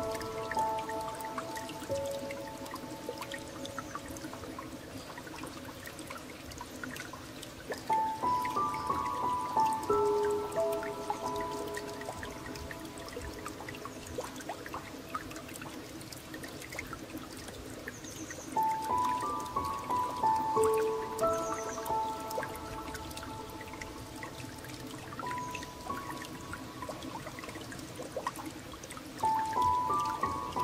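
Slow, gentle piano music, with short phrases of a few held notes coming back about every ten seconds, over a steady bed of flowing, trickling water.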